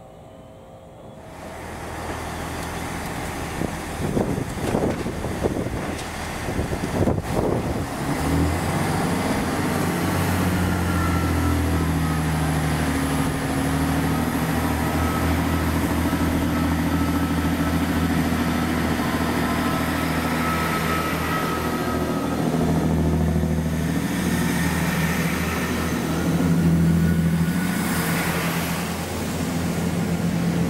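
GWR Class 165 Thames Turbo diesel multiple unit at the platform, its underfloor diesel engines droning steadily with a faint high whine above. The engine note grows louder near the end.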